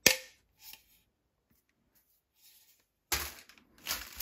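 A sharp plastic click as a hard plastic toy weapon is handled, followed by a few faint handling sounds and, a little after three seconds in, a short rustle of cellophane wrapping.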